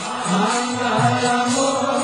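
Group devotional chanting, several voices singing a melodic mantra line together over instrumental accompaniment, with a light percussive jingle.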